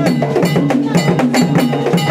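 Drum-led percussion music with a fast, steady beat: repeated sharp drum strikes with a ringing high-pitched strike recurring in the pattern.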